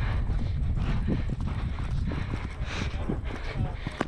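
Hoofbeats of a ridden horse moving over grass, heard from the saddle as a run of repeated thuds, over a steady low rumble of wind on the microphone.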